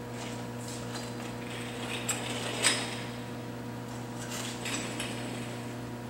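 Steady electrical hum with a few light clicks and clatters, the sharpest about two and a half seconds in.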